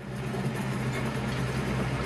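Diesel engine of a Caterpillar 938M wheel loader running steadily, a low even drone.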